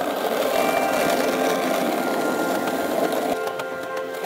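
Skateboard wheels rolling over pavement, a steady grainy rumble that stops abruptly about three seconds in, under background music.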